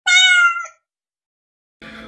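A cat meowing once: a single high call lasting under a second that falls slightly in pitch.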